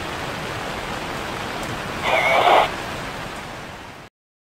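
Steady rain falling, an even hiss, with a brief louder cry-like sound with a wavering pitch about two seconds in. The hiss fades down near the end.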